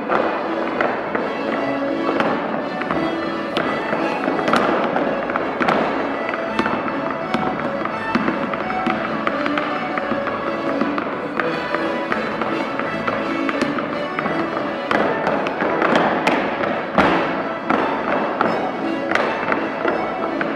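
Wooden-soled clogs clattering in quick, uneven rhythms on a wooden floor as a group of clog dancers steps, over live dance music with held notes.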